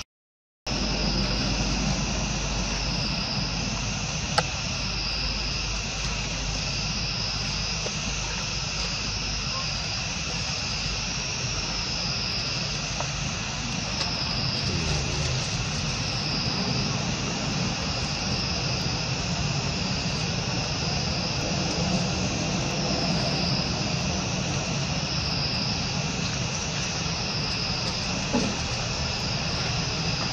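A steady outdoor insect chorus, high and pulsing, swelling and fading about every two seconds over a low steady rumble, with a brief dropout just after the start.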